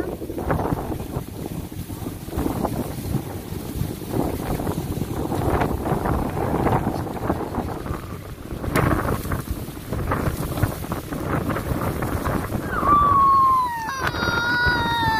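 Wind buffeting the microphone in uneven gusts. About a second before the end, a loud, high-pitched sound sliding down in pitch, like a voice, starts.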